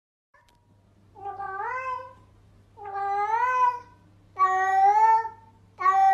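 Cat meowing over and over: four long, drawn-out meows about a second and a half apart, each rising in pitch at the start and then holding. The first comes about a second in.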